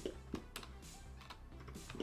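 A few faint, scattered computer keyboard key clicks as shortcut keys are pressed, over a low steady background hum.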